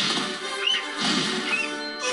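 Film score music with a big cartoon bird's two short squawks over it, about halfway through and near the end, heard through a TV speaker.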